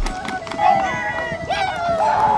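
A voice calling out in long, drawn-out pitched phrases, as the background music's heavy bass beat drops out at the start.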